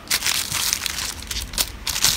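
Small clear plastic zip-lock bags crinkling and crackling as a hand rummages and sorts through them, a continuous run of crisp crackles and clicks.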